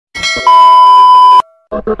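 Intro sound effect: a bell-like chime that runs straight into a loud, steady beep like a TV test-pattern tone, cut off suddenly about a second and a half in. After a brief silence, fast rhythmic intro music starts near the end.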